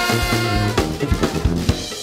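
Live brass band playing: held horn notes and a sousaphone bass line over snare and bass drum, with a quick run of drum hits in the second half.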